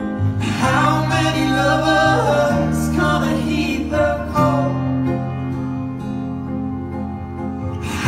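A live band song: a male singer sings long, drawn-out phrases over acoustic guitar and sustained band chords, with a short gap in the vocal between about two and four seconds in.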